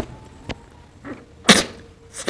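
A person blowing their nose hard into a cloth towel: one sharp, forceful burst about one and a half seconds in, after a couple of small clicks.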